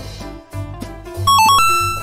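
Children's background music with a steady beat. About two-thirds of the way in, a bright electronic chime of a few quick notes ends on a held note, the correct-answer sound effect.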